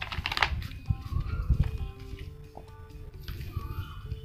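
Hands handling plastic packaging and a black neck-mount phone holder: a crinkle right at the start, then small clicks and knocks. Quiet background music with a few sustained notes plays throughout.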